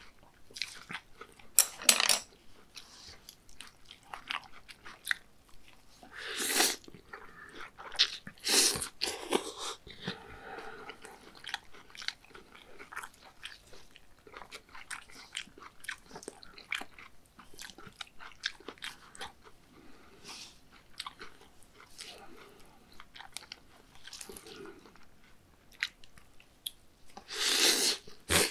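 Close-miked chewing and biting of raw beef bibimmyeon with crisp Korean pear strips: irregular wet clicks and crunches, with a few louder crunches in the first half.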